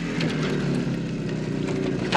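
Sidecar motorcycle engine running at low revs as the machine rolls up and stops on a wooden plank deck.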